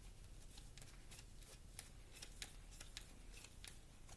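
Faint, quick clicks of a tarot deck being shuffled by hand, about three a second and slightly uneven.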